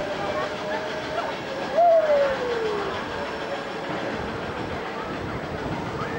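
Small fairground ride train running past, with a steady whine and a loud tone about two seconds in that slides down in pitch over about a second.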